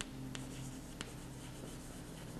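A piece of chalk writing on a chalkboard: faint scratching, with a few sharp ticks as the chalk strikes the board, three of them in the first second.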